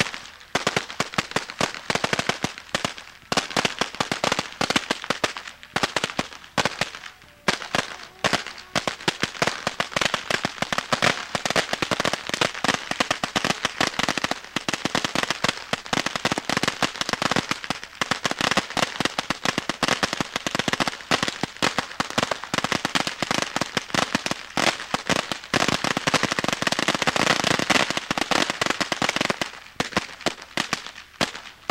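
Firecrackers going off on the ground: dense, rapid popping that runs almost without a break, with a few short pauses in the first eight seconds.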